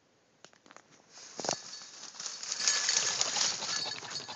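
Ring-necked pheasant flushing from tall grass: a rough whir of wingbeats starting about a second in, loudest in the second half.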